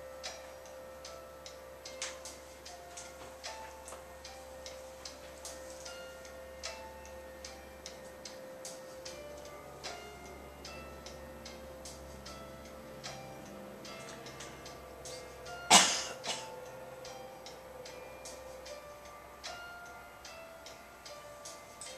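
Music from the Rhythm Cat rhythm-game app playing on an iPad's small speaker: held notes over a run of light ticking clicks. A single loud knock comes about three-quarters of the way through.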